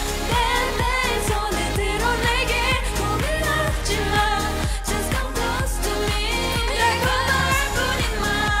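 K-pop dance-pop song: female vocals sing over a steady electronic beat and bass.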